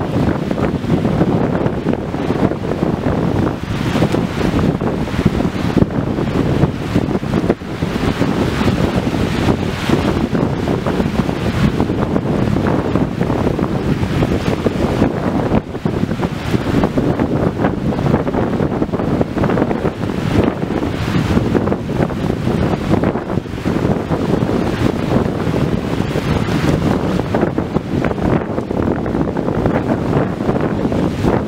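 Steady, loud wind buffeting the microphone, rising and falling in gusts, with ocean waves washing beneath it.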